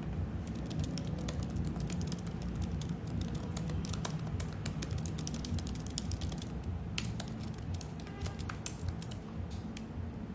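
Typing on a computer keyboard: a run of quick, irregular keystroke clicks, over a steady low hum.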